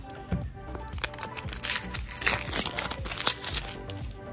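Foil wrapper of a Pokémon trading card booster pack crinkling and rustling as it is torn open and handled, for a couple of seconds from about a second in, over background music.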